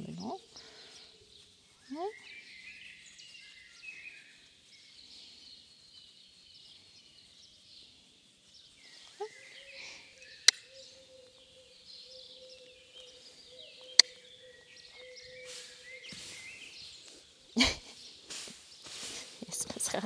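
Small birds chirping and twittering off and on, with a faint steady hum in the middle and two sharp clicks. Near the end comes a louder burst of noise, followed by short scuffing rustles.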